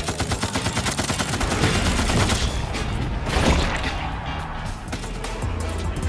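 Cartoon sound effect of an arm cannon firing meatballs in a rapid run of shots, like a machine gun, for about the first two seconds, over background music.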